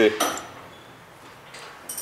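A single short metallic clink as a steel camber-adjustment bolt with its washer is set down on a metal workbench, ringing briefly.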